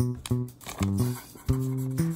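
Background music: plucked guitar playing a run of short notes, with a longer held note about one and a half seconds in.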